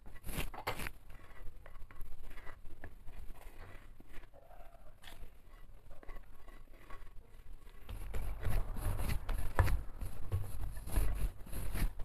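Hands working crumbly shortbread dough in a large ceramic dish: soft, irregular rubbing and scraping as flour is mixed in. The last few seconds are louder, with dull pressing thuds as the dough is gathered into a ball.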